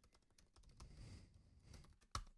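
Faint computer keyboard typing: a quick run of soft key clicks as a command is typed.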